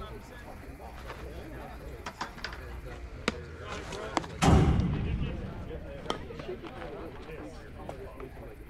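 A single loud firework boom about four and a half seconds in, dying away over about a second.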